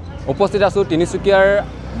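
A man speaking over a low, steady rumble of passing road traffic, with motorcycles on the road.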